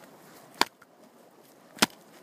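Two sharp clicks, a little over a second apart.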